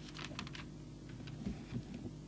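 Light clicking at a computer: a quick run of several clicks near the start and two more later, with two soft low thumps about three quarters of the way through, over a faint steady hum.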